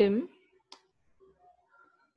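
A single short click of a computer keyboard key, under a second in, after a spoken word.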